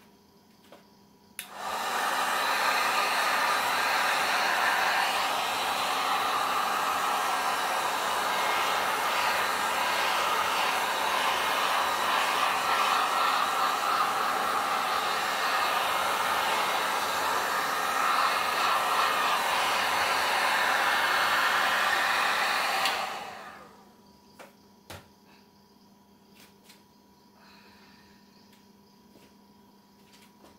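Handheld electric heat gun blowing steadily. It switches on about a second and a half in, runs for about 21 seconds and then winds down. It is blowing hot air over wet acrylic pour paint to pop the surface bubbles.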